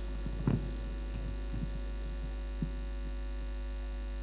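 Steady low electrical hum from the band's amplified sound system between pieces, with a few faint soft knocks, the clearest about half a second in.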